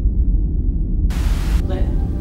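A steady low rumble, broken about a second in by a half-second burst of static hiss.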